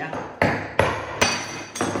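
A claw hammer strikes four times on a wooden table among broken ceramic bowls, about half a second apart. Each blow is a sharp crack with a short ring.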